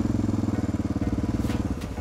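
Honda NX650 Dominator's single-cylinder four-stroke engine running at a steady speed while riding, heard as an even, rapid pulsing beat with a constant pitch.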